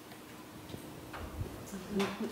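A few faint, separate clicks as a laptop is worked to advance a presentation slide, over quiet room tone. Speech starts right at the end.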